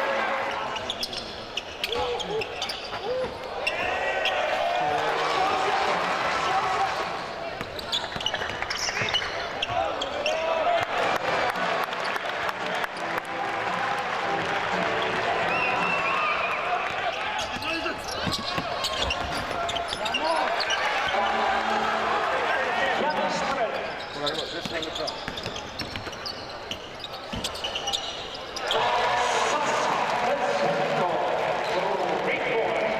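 Live court sound of a basketball game in an indoor arena: a basketball bouncing on the hardwood court amid players' and bench voices calling out. The sound dips quieter for a few seconds late on, then picks up again.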